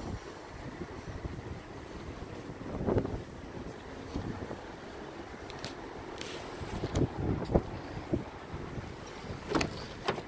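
Wind buffeting the microphone outdoors, a steady low rumble, with a few faint knocks from handling and footsteps scattered through it.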